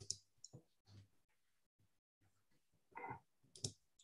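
Faint, scattered clicks and taps at a desk computer, about five in a few seconds, with a slightly longer rustle about three seconds in, against near silence.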